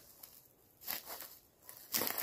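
Footsteps crunching on dry pine needles and leaf litter: two short steps about a second in, with a small click near the end.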